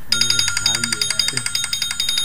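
An electronic alarm ringing in a fast, steady trill of high beeps, with a person's low voice sounding under it until about a second and a half in.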